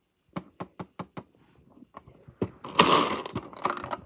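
Plastic toy bingo ball machine being worked to draw a ball: a quick run of about seven sharp plastic clicks, then a loud burst of small plastic balls rattling for about a second near the end.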